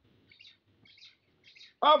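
Birds chirping faintly: a few short, high calls spaced through the pause.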